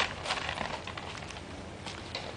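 A plastic bag crinkling and rustling as a dusky leaf monkey grabs and tugs at it. There is a sharp crackle at the start, then scattered smaller crackles.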